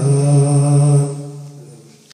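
A man singing an unaccompanied Bangla Islamic song into a microphone, holding one long final note that fades away after about a second.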